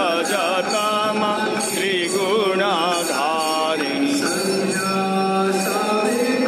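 Voices chanting devotional mantras in a wavering, melodic line, with bells ringing again and again over the chant, as in a Hindu puja.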